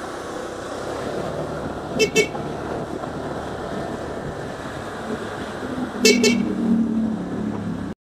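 Motorcycle riding along a street with steady engine and road noise, and a vehicle horn tooted in quick double beeps twice, about two seconds in and again about six seconds in.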